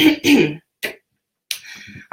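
A woman clears her throat: a short voiced sound in the first half-second with a brief catch after it, then a soft hiss near the end.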